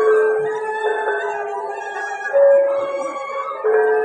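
Balinese gong kebyar gamelan playing: bronze metallophones and gongs struck together, their notes ringing on and overlapping, with a new stroke about every second or so.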